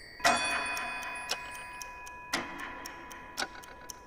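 A clock ticking over soft, sustained music chords; a new chord enters a little past two seconds in.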